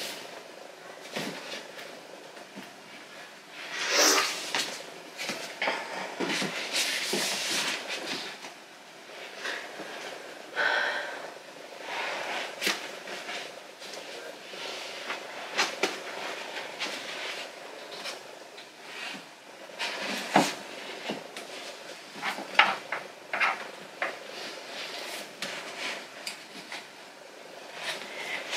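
Books being moved about and pushed into place on a crowded bookshelf: a string of scrapes, rustles and knocks of books against each other and the shelf, with the longest, loudest sliding a few seconds in.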